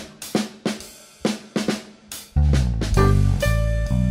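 A jazz trio's drum kit plays a short break alone, a string of sharp drum hits. About two and a half seconds in, the grand piano and electric bass come back in and the full trio plays on.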